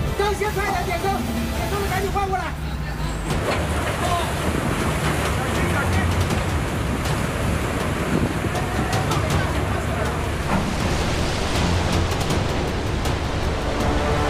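On-deck location sound at sea: a man's voice calls out for the first two seconds or so. Then a steady rush of wind and sea runs over a low engine rumble, with a few faint knocks.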